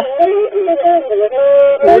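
Traditional Ethiopian azmari music: a melismatic vocal line and a bowed masinko (one-string fiddle), with held notes stepping up and down in pitch. A new sung phrase begins near the end.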